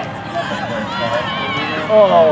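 Spectators' voices: scattered calls and talk from the sideline crowd, over a low crowd murmur.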